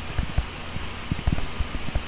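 Soft, irregular low taps and knocks from a stylus writing on a pen tablet, over a steady low electrical hum and hiss.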